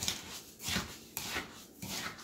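Fingers rubbing and stirring damp coarse sea salt mixed with orange zest, juice and dried herbs in a bowl, in several short scratchy strokes of the salt grains.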